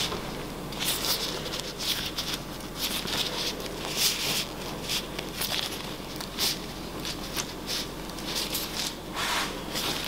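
Gloved hands pressing and flexing a silicone soap mold to push set cold-process soap out of it: irregular soft rustles and scrapes of glove on mold and mold on the board.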